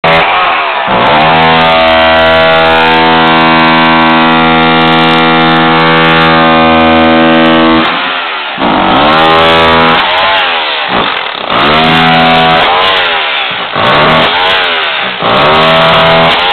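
Corded electric demolition hammer chiselling through floor tile and concrete to open up to a leaking water pipe. It runs steadily for several seconds from about a second in, then is triggered on and off in a string of short bursts, its motor whine rising and falling each time.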